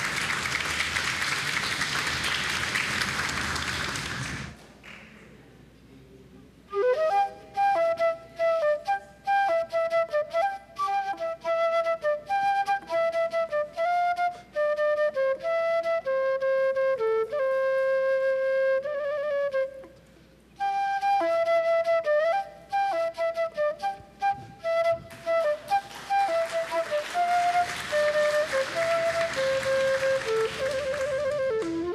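Applause for about four seconds, then after a short lull a slow instrumental flute melody played note by note, with applause swelling again under the music near the end.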